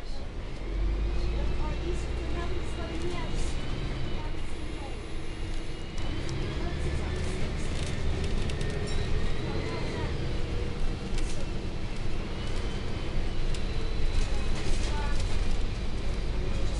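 Steady low engine and road rumble heard from inside a moving vehicle, with faint indistinct voices and scattered small clicks.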